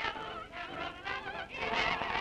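Mixed choir of men and women singing held notes with a wide vibrato.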